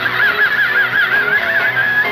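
Live rock band playing, with one high note held for about two seconds over the band, wavering evenly in pitch with a fast vibrato after sliding up into it.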